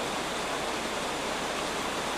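Steady hiss of background noise with no distinct event: the recording's own noise floor.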